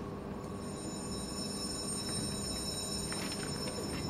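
A steady hum and hiss in a hall during a pause, with a few faint knocks about three seconds in.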